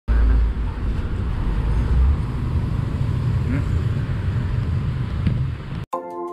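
Outdoor background noise dominated by a low rumble, with two stronger low surges in the first couple of seconds. It cuts off suddenly just before the end.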